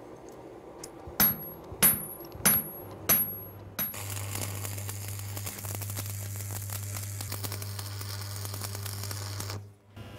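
Four ringing metal strikes, about half a second apart. Then, about four seconds in, an electric arc welder runs: a steady low electric hum under the crackling hiss of the welding arc, which cuts off suddenly just before the end.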